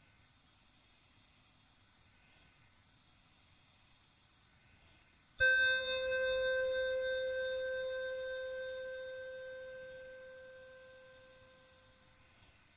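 A single electronic keyboard note from a Casio PT-31 played through a Zoom 9030 multi-effects unit, over a faint hiss. The note starts suddenly about five seconds in, then holds and slowly fades away over about six seconds.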